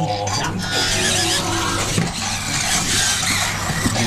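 Self-transforming remote-control Transformers Optimus Prime robot toy converting from robot to truck. Its servo motors run continuously while its built-in speaker plays transformation sound effects.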